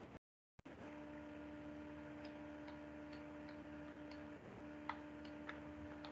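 Faint steady electrical hum with a few light, irregular ticks over it, after a brief dropout to silence at the start.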